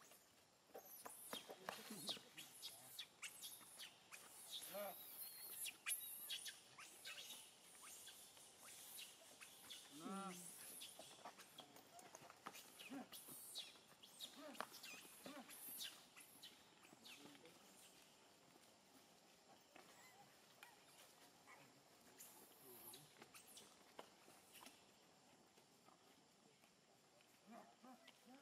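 Faint outdoor ambience with scattered light clicks and rustles, and one short pitched call about ten seconds in.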